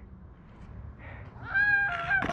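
Faint rolling noise, then about one and a half seconds in a high-pitched cry starts and is held at one steady pitch: a person's shout as a scooter rider drops in on the concrete ramp.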